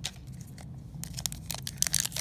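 Foil wrapper of a Panini Mosaic football card pack crinkling as it is picked up and handled, a few faint clicks at first, then a dense crackle from about a second in.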